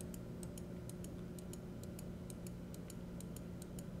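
Computer mouse button clicked rapidly and repeatedly, about five faint clicks a second, over a low steady hum.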